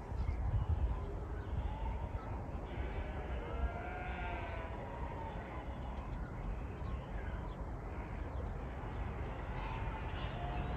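Sheep bleating, several calls with the loudest about three to four seconds in, over a steady low rumble.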